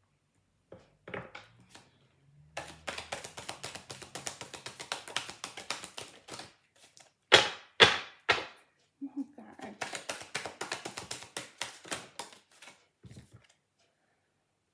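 A deck of reading cards shuffled by hand: long runs of rapid light card clicks, with two louder sharp snaps about halfway through.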